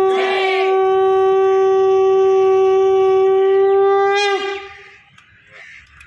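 Conch shell (shankh) blown in one long, loud, steady note. It ends about four seconds in with a quick drop in pitch as the breath runs out. Voices briefly shout over the first half-second.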